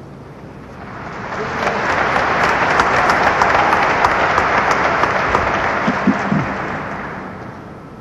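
Audience applauding, building up about a second in and dying away near the end.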